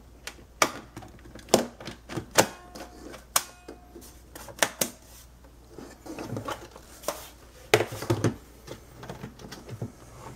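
Sharp plastic clicks and knocks as a laptop battery is pushed into its bay and snapped into place, then handling noise and a few thumps as the plastic laptop is turned over and set down on a desk.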